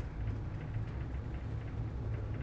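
Steady low background rumble, with no distinct events.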